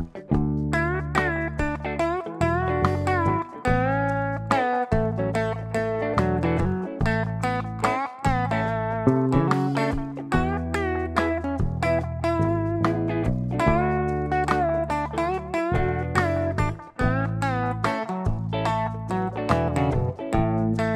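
Telecaster-style electric guitar playing single-note A major pentatonic lead phrases, with string bends and wavering held notes, over continuous low bass notes.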